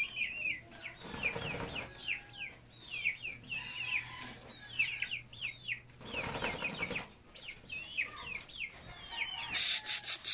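Birds chirping over and over, in short falling calls several times a second. Two louder bursts of noise about a second long come in the first and second halves, and a rapid clatter of clicks starts near the end.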